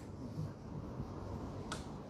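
Low room hum during a pause in speech, with one short, sharp click near the end.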